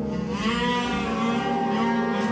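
Jazz big band holding a sustained chord, with one note above it bending up and then back down in pitch.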